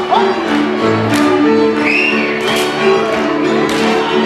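Live Valachian folk dance music from a fiddle-led string band, played at a lively pace, with sharp percussive hits landing every half second to second over it.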